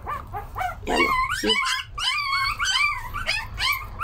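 Young foster puppies crying: a rapid run of short, high-pitched squeals and whimpers, several a second, starting about a second in. These are the hungry cries of pups at feeding time.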